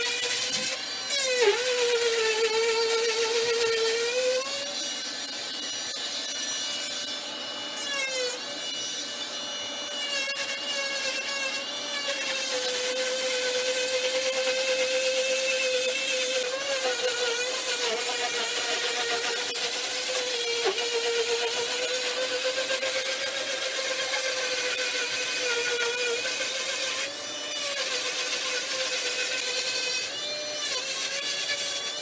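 Oscillating cast saw with its attached dust vacuum running steadily while cutting through a leg cast. Its motor tone dips in pitch several times as the blade bears on the cast.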